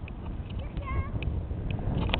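Low rumble of wind on the microphone, with one short, high, wavering whine about a second in and a few faint clicks.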